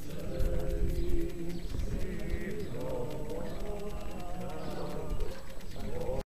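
A group of voices singing a hymn together, in long held notes, over a low rumble on the microphone.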